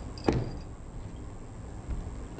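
A single sharp thump about a quarter second in, from a folded saree being handled at a studio counter, then only low room hiss.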